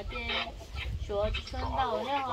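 A woman's voice speaking in short phrases, over a low rumble.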